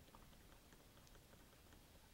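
Near silence, with a few faint small ticks from a thin stirrer working paint inside a small glass bottle of model paint.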